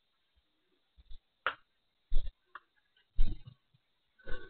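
Handling noise on a pen camera's built-in microphone: a few short knocks and rubs at irregular moments, the loudest about two and three seconds in, as the camera is moved and covered.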